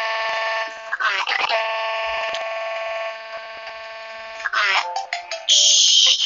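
Electronic sound effect: a long, steady synthetic tone with many overtones, held briefly, then again for about three seconds after a short warbling slide. A loud hissy burst comes near the end.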